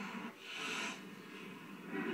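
A person's short, sharp breath through the nose, about half a second in, then a faint murmur.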